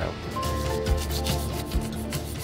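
A hand tool rubs and scrapes across the white-coated surface of a scenic ship rib in a run of short strokes. This is the finishing stage that works the rib into a piece of worn-looking timber.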